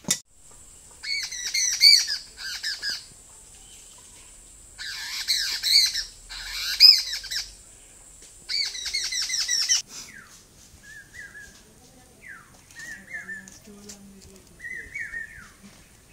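Birds calling in the trees: three loud bouts of rapid, repeated squawking chatter in the first ten seconds, then scattered shorter, softer calls. A faint steady high-pitched tone runs underneath.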